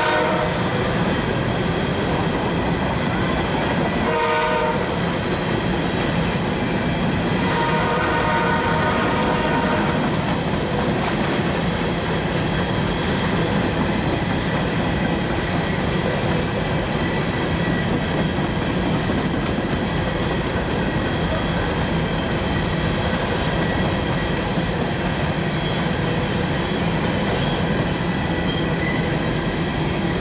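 Freight train of hopper cars rolling past, a steady rumble and clatter of wheels on rail throughout. The locomotive's horn sounds briefly about four seconds in and again from about eight to ten seconds in.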